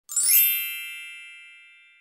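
A single bright, bell-like chime struck once just after the start, its high ringing overtones fading away slowly over about two seconds.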